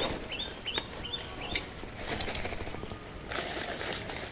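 A small bird chirping in quick short calls through the first second or so, over rustling and splashing as a wet mesh keep net holding small fish is handled.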